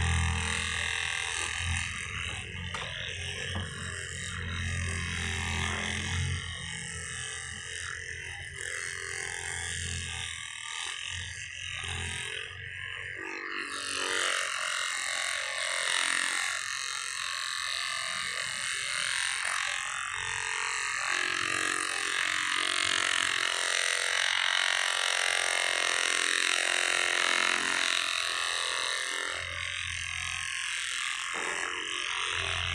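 Handheld percussion massage gun running, its head hammering rapidly against a leg in a continuous rattling buzz. The sound is heavy and low in the first half and turns higher and thinner about halfway through as the gun is moved and pressed differently.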